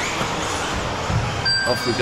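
Steady race noise of electric 1/10 2WD RC buggies running on an indoor carpet track, with hall reverberation. About one and a half seconds in comes a short, steady electronic beep, typical of a lap-timing system as a car crosses the line.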